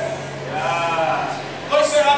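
A man's voice preaching, with one drawn-out, wavering stretch of voice about halfway through before speech picks up again near the end.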